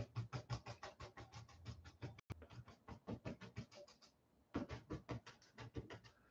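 Paintbrush scrubbing acrylic paint in quick, short, faint scratchy strokes, about eight a second, with a brief pause about four seconds in.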